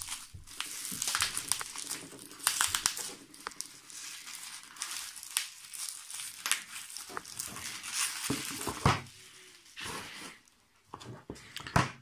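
Bubble wrap crinkling and rustling in irregular crackles as it is pulled by hand off a small cardboard box, with a brief lull about ten seconds in.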